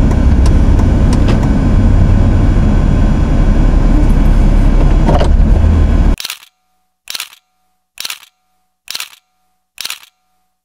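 Steady road and engine noise of a moving car, heard from inside the cabin, cuts off suddenly about six seconds in. After that there is silence broken by short, sharp camera-shutter clicks about once a second.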